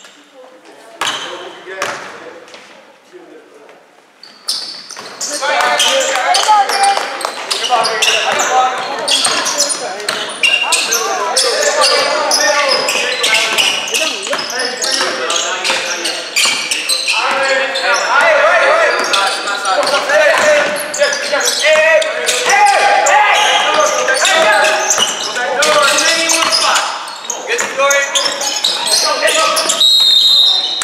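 A basketball bouncing on a hardwood gym floor during play, with loud shouting voices throughout from about five seconds in.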